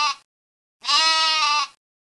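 A goat bleating: one call fades out right at the start and a second, identical call comes about a second in.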